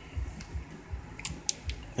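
Faint handling noise as the camera is moved about in the hand, low soft thuds with a few small sharp clicks in the second half.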